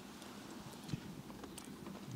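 Quiet room tone with a low steady hum and a few faint, scattered clicks and soft knocks, the clearest about a second in.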